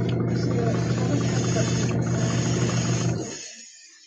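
Small airbrush compressor motor running with a steady electric hum, under the hiss of the airbrush spraying paint. A little after three seconds in, the motor stops and winds down, and the hiss trails on briefly.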